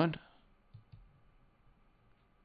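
A faint computer mouse click about three-quarters of a second in, over low background hiss.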